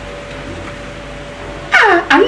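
A pause in the dialogue: low room noise with a faint steady hum, then a woman's voice starts loudly near the end.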